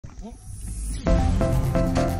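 A hiss swelling over the first second, then background music with a steady beat, about three beats a second, coming in about a second in.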